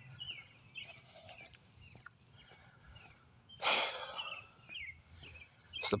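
Birds chirping faintly in the background, with one short, loud breath about halfway through.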